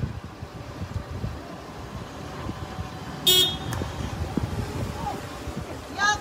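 Street traffic rumble with one short car horn toot about three seconds in.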